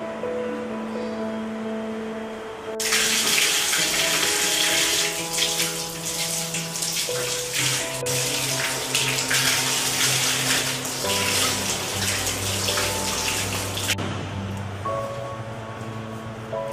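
Water running from a wall tap and splashing over hands as a man washes for ablution. The water starts suddenly about three seconds in and cuts off suddenly near the end, over background music with held tones.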